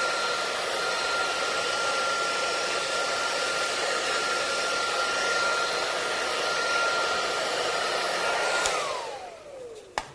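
Handheld hair dryer blowing steadily with a constant high motor whine, then switched off near the end, its whine falling in pitch as the motor spins down.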